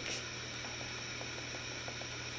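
Quiet room tone: a steady even hiss with a faint low hum underneath, and nothing else of note.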